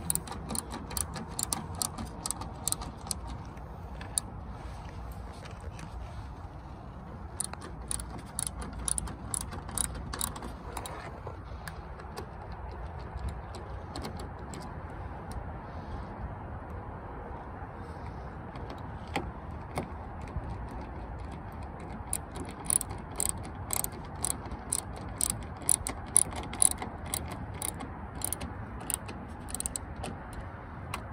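A hand ratchet with an extension turning the passenger door mirror's mounting nuts, clicking in quick runs: a burst near the start, another from about seven to eleven seconds in, and a long dense run in the last third.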